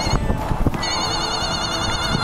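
Electronic warbling tone from a triggered gadget geocache, starting about a second in and sounding steadily, preceded by a couple of clicks.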